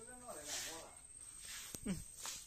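A person's voice speaking a few untranscribed words, with hissy 's' sounds. A sharp click comes near the end, followed by a short sound that falls steeply in pitch.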